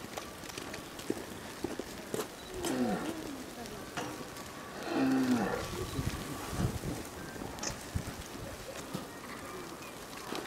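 A voice making two drawn-out sounds, about three and five seconds in, the second one falling in pitch and louder.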